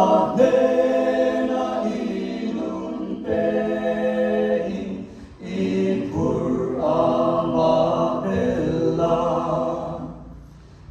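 Mixed a cappella group of four men and two women singing in harmony, in two long held phrases with a short break about five seconds in.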